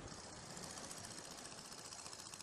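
Small motorboat's engine running, faint and steady with a rapid chug.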